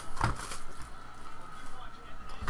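Plastic shrink-wrap crinkling as it is pulled off a cardboard hobby box, with one sharp crackle about a quarter second in and softer rustling after.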